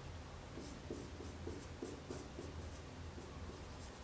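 Felt-tip marker writing on a white board: a quick run of short scratchy strokes as characters are drawn, over a low steady hum.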